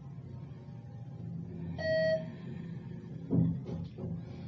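Elevator chime: a single steady beep of about half a second, about two seconds in, over a steady low hum. A short thump follows near the end.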